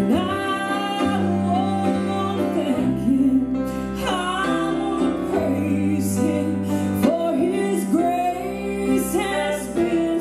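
A woman singing a southern gospel song to her own acoustic guitar accompaniment, with sustained low instrumental notes underneath.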